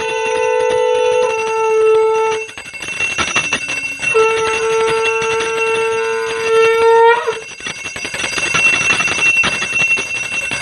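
Conch shells blown in long steady blasts: two sound together at first, one stopping about a second in and the other holding to about two and a half seconds; after a short gap a conch sounds again for about three seconds, its pitch lifting as it cuts off. A bell rings without a break under and after the blasts.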